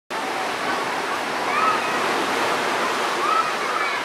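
A steady rushing noise, like running water, with a few faint voices over it.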